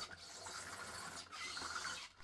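Faint rubbing and whirring from a 3D-printed omni-wheel balancing robot, its motor-driven hubs and small rollers working the wheel against the tabletop as it tries to balance.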